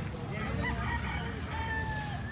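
A rooster crowing, ending on a long held note that drops away at the end.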